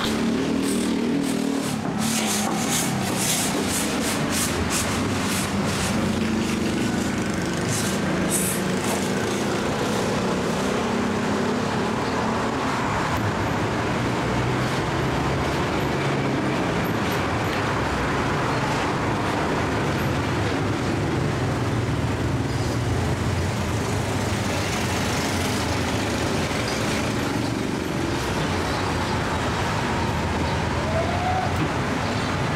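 Steady street-traffic noise with passing vehicles, and a run of light sharp clicks and scrapes during the first several seconds.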